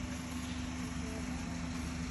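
A vehicle engine idling, a steady low hum and drone with no change.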